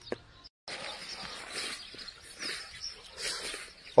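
Faint outdoor pasture ambience: soft, unpitched rustling with no clear single source, after a brief drop to dead silence about half a second in.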